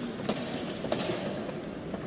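Two sharp clicks about two-thirds of a second apart from draughts play: a piece set down on the board and the digital game clock's button pressed. Under them is a steady background hubbub.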